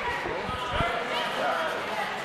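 A few dull thuds from the wrestling ring a little under a second in, with crowd voices in the background.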